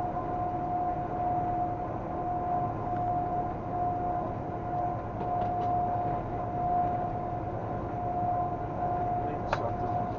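Steady road and engine noise of a vehicle driving along a highway, with a constant high hum running under it. A few faint ticks come about halfway through, and there is a single sharp click near the end.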